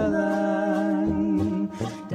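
Small brass band with accordion (tuba, baritone horns and trumpets) playing a German folk/Schlager tune. A chord is held for about a second and a half, then the sound briefly drops near the end.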